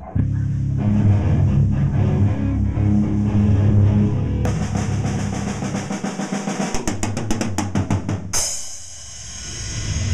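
Rock music led by a drum kit over low bass notes: a drum roll that gets faster, ending on a crash that dies away near the end.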